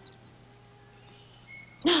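Quiet pause with a steady low hum and a few faint, short, high chirps from small birds, one near the start and one a little before the end. A woman's voice comes in at the very end.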